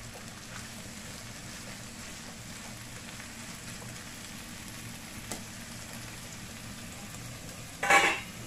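Diced bacon and onion sizzling steadily in a nonstick frying pan as they are stirred with a spatula. Near the end the spatula gives a brief, loud clatter against the pan.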